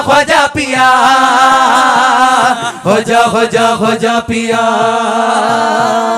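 Qawwali singing: a voice holds two long, wavering 'aah' notes, the first ending about two and a half seconds in and the second running to the end, over a steady drone and a regular percussion beat.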